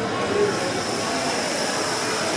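Thousands of dominoes toppling in a dense, steady clatter of many small clicks running together.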